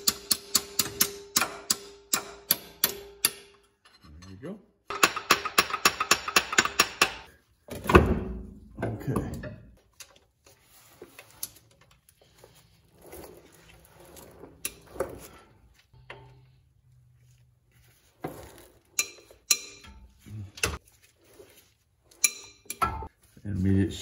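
Socket ratchet clicking in quick, even runs as the bolts holding the intermediate shaft are backed out, with scattered metal clinks in between.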